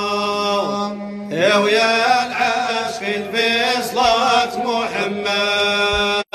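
Devotional Arabic chant in praise of the Prophet Muhammad: a voice holding long, ornamented sung notes over a steady low drone, with a brief lull about a second in.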